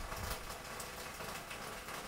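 Steady background noise: an even hiss with a faint low rumble and no distinct event.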